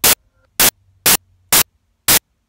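Loud, short bursts of static-like noise, evenly spaced at about two a second, with near silence between them.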